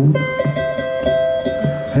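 Two amplified acoustic guitars playing a slow blues in open "Spanish" tuning, a high note held out for over a second above a repeating low bass line.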